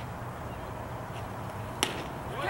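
A pitched baseball smacking into the catcher's leather mitt: a single sharp pop near the end, over a steady low background rumble.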